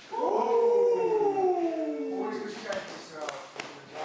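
A long drawn-out howl-like vocal cry, sliding slowly down in pitch for about two seconds, followed by shorter voice sounds and a few sharp smacks.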